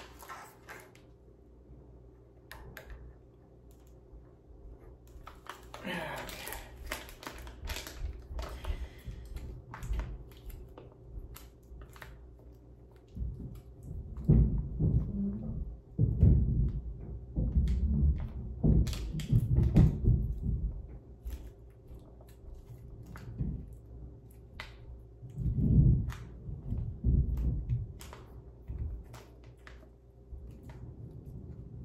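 Handling noise from a white bag being worked in the hands: a crinkling rustle about six seconds in, then clusters of dull low thumps and bumps.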